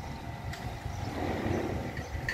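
A low, uneven rumble of outdoor background noise.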